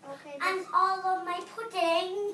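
A young girl singing a few held notes.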